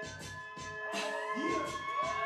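Hip-hop backing track playing through a club sound system: a beat with short percussive hits under sustained synth tones, one of which glides upward near the end.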